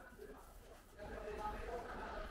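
A faint, indistinct voice, the words not made out, louder in the second half.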